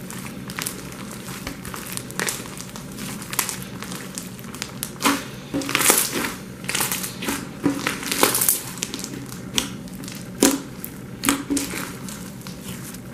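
Thick pink slime with small beads mixed in, kneaded and squeezed by hand, giving a run of wet crackles and pops. They come thicker and louder through the middle and later part.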